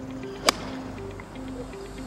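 A single sharp crack of a golf iron striking the ball, about half a second in, over background music.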